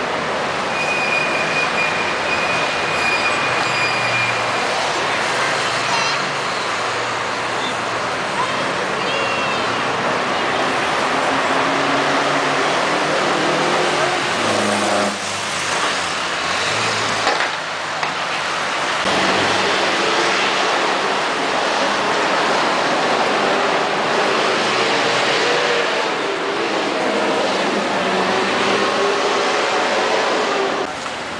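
Steady road traffic on a busy city avenue: a continuous wash of cars and buses driving past, with engines rising and falling in the middle and near the end.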